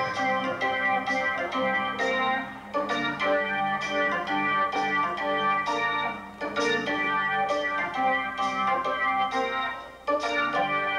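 Live electric keyboard playing an organ sound: sustained organ chords and phrases opening a slow blues number, with two short breaks between phrases.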